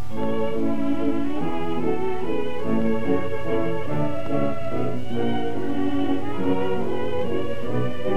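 Orchestral background music led by strings, playing a steady melody.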